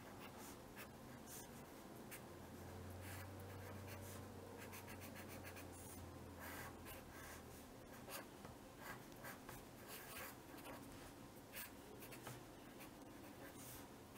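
Pen drawing on paper: faint, irregular short scratching strokes as lines of a valve symbol are sketched.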